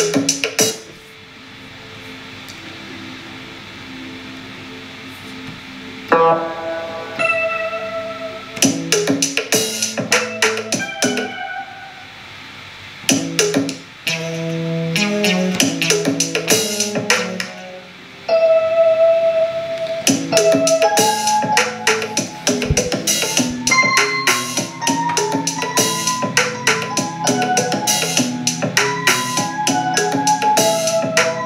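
A beat playing back: drum hits with a synthesizer keyboard part on top. The part drops out and comes back several times, and its synth sound changes as Alchemy presets are tried, among them 80s Hard Bass and 80s Pop Electric Piano.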